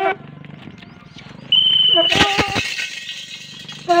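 A short, steady whistle about a second and a half in, then men's shouts urging on a yoked pair of bulls, over a clinking rattle. Another shout comes at the very end.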